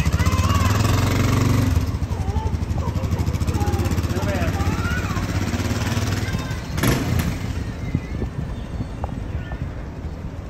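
Honda dual-sport motorcycle engine idling with an even low pulse, loudest in the first couple of seconds and then fading gradually; a brief loud noise cuts across it about seven seconds in.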